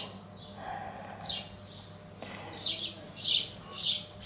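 Small birds chirping: a handful of short, high chirps, most of them in the second half.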